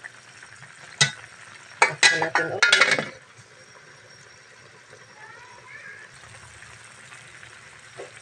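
Metal pot lid clicking and clinking against an aluminium pot of coconut-milk stew, several sharp clinks about two to three seconds in. After that comes a faint steady hiss of the stew boiling.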